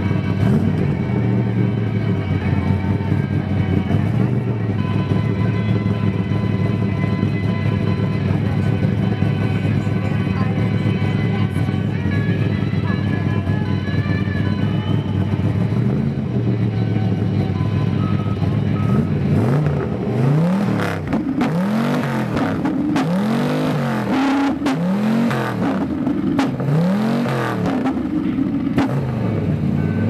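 Engine of a custom hearse idling steadily, then revved in quick repeated blips, about one a second, over the last ten seconds.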